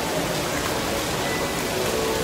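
Steady rushing hiss, like running water, with faint music under it.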